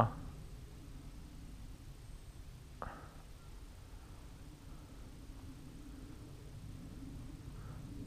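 Faint outdoor background noise: a low rumble with a faint steady hum, and one brief short chirp about three seconds in.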